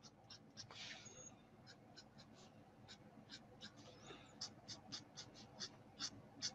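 Faint, quick scratching strokes of an alcohol marker tip flicked across cardstock, two or three short strokes a second, a little louder and closer together in the second half.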